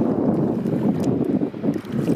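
Wind buffeting the microphone: a loud, gusty low rumble that dips briefly twice in the second half.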